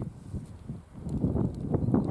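A deer barking in alarm, faint, with short barks in the second half. It is the alarm call of a deer that has sensed the hunter.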